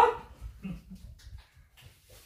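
A short, sharply rising exclamation of surprise, 'What?', right at the start, followed by faint low sounds.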